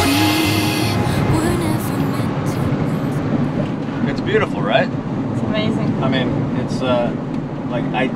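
Steady road and engine noise inside the cab of a Ram camper van driving along. A man's voice comes in from about four seconds in.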